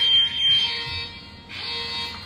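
Home security alarm siren sounding in high-pitched pulses, set off by a door being opened while the system is armed.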